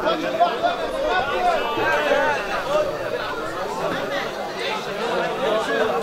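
Many people's voices talking and calling out over each other: indistinct crowd chatter around the cage.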